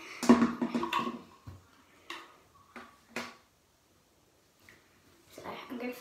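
A child's voice briefly in the first second, then a few short clicks and knocks from a plastic water bottle being handled, followed by a moment of dead silence.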